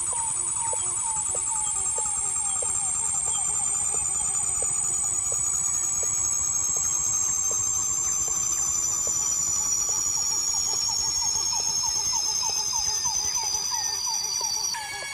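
Several high electronic tones gliding slowly and steadily down in pitch together, over a rapid falling chirp repeating about three times a second.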